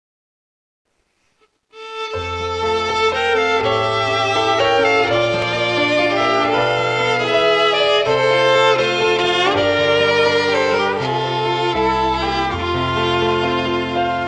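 Two violins and a piano playing a hymn tune, the music starting about two seconds in after a short silence.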